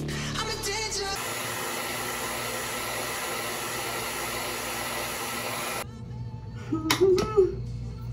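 A handheld hair dryer blowing steadily for about five seconds, after music with singing in the first second. The dryer cuts off abruptly, followed by a few knocks of something being handled.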